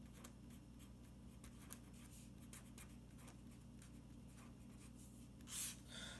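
Pen writing on paper: faint, quick scratching strokes of handwriting over a low, steady room hum.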